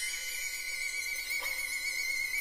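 Violin holding one very high note with a slight vibrato, reached by a short upward slide at the start.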